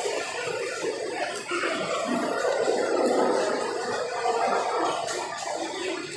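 Indistinct murmur of a group of people's voices and movement, echoing in a bare concrete room.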